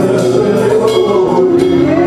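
Live gospel worship music led by an electronic keyboard, with sustained chords.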